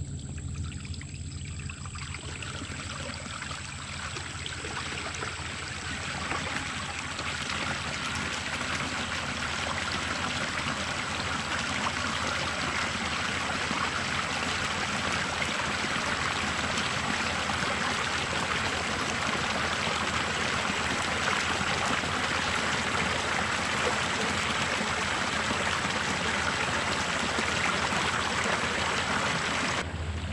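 Water gushing out of a large culvert across its slab and splashing into the pool below. It builds from a faint trickle over the first several seconds into a steady rush: the first surge of water released from a beaver dam upstream.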